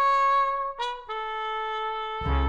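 Short brass music sting: a few held trumpet-like notes stepping down in pitch, the last one held for over a second.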